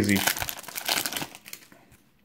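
Foil wrapper of a 1996 Pinnacle Select football card pack crinkling in the hands as the cards are pulled out of it, dying away in the second half.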